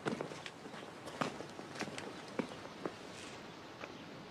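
Footsteps of a man walking at an unhurried pace, separate steps landing roughly every half second to second.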